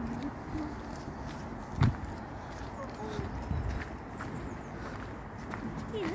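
Footsteps on a rough outdoor path over a steady low rumble of background noise, with one sharp knock a little under two seconds in.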